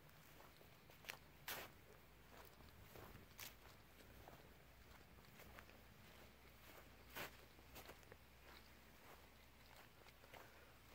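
Near silence broken by a few faint, irregular footsteps on grass.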